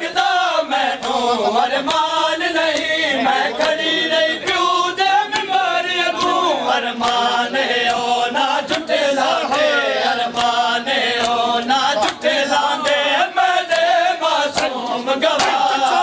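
Male voices chanting a Punjabi nauha, a Shia mourning lament, in long sung phrases. Sharp slaps of chest-beating (matam) run under the singing.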